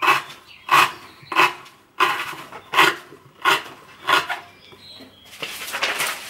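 Push cuts of a freshly stropped Roselli Bear Claw knife, with an ultra-high-carbon wootz steel blade, slicing through rope against a wooden board. There are seven or eight short rasping cuts, about one every three-quarters of a second. The blade goes through easily, a sign that the stropping has restored the edge.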